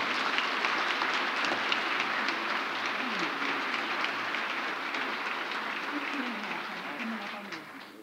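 Audience applauding steadily, a dense patter of many hands clapping that dies away over the last second.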